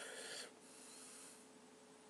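A man's faint breath, loudest in the first half second and then trailing off into fainter breathing.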